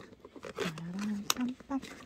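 Black plastic food container being handled, with a sharp plastic click right at the start and another about a second and a half in, while a voice hums wordlessly in between.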